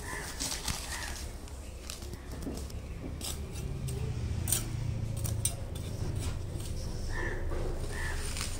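Small metal hand trowel scraping and scooping loose soil off concrete and into a plastic bag, making a run of short scrapes and clinks.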